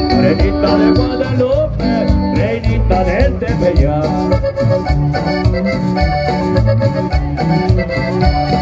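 Accordion-led Latin American dance music with a steady bass-and-drum beat.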